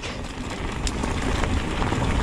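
Steady rushing of wind on the camera's microphone, with a low rumble that swells slightly.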